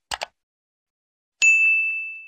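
Subscribe-button animation sound effect: two quick mouse-click sounds, then about one and a half seconds in a single bright notification-bell ding that rings on and fades.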